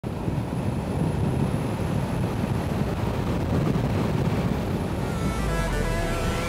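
Wind rushing and buffeting at the microphone, with road and engine noise, in the open cockpit of a Mercedes-AMG GT R Speedlegend driving with no windscreen. Music starts to come in near the end.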